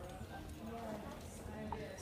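Faint, indistinct voices over a low steady room rumble.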